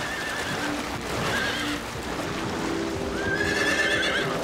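Horses galloping through shallow water, a steady splashing rush, with whinnies at the start, after about a second, and a longer one near the end.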